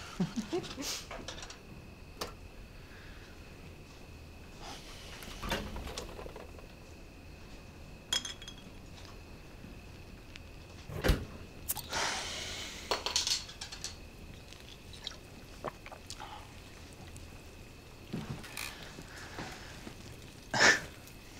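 Quiet kitchen handling sounds: scattered soft knocks and clinks as a fridge is opened and a glass beer bottle is taken out. One heavy thud comes about eleven seconds in and a brief rustling hiss follows, over a faint steady high hum.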